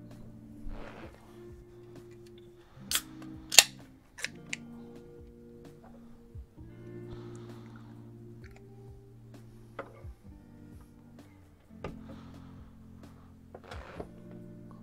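A beer can cracked open by its pull-tab: two sharp snaps about three seconds in, then a few lighter clicks, over soft background music.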